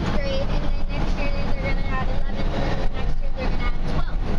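Steady engine and road rumble heard inside the cab of a U-Haul moving truck on the move, with faint talking in the cab.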